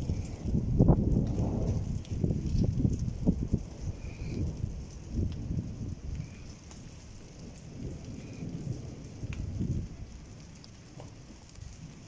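A long, uneven rumble of thunder that dies away over about ten seconds.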